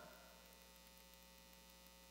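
Near silence: a faint, steady mains hum.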